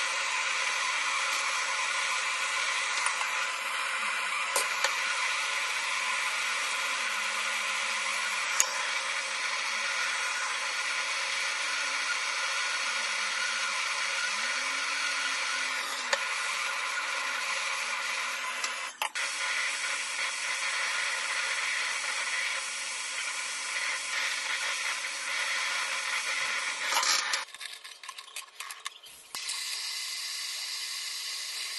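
Gas torch flame hissing steadily as it heats a link of a sterling silver chain. The hiss cuts off suddenly near the end, followed by a few light clicks.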